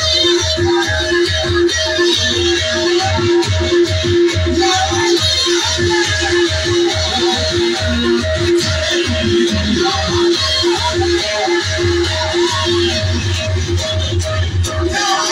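Live, amplified music: a plucked string instrument repeats one note quickly and evenly over a steady low drum beat.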